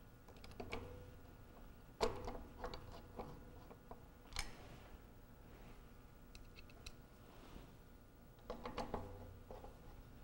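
Light metallic clicks and taps of a magnetic screwdriver and small steel mounting screws being started loosely into the lock body's mounting studs. The sharpest click comes about two seconds in, with scattered clusters of fainter ticks after it.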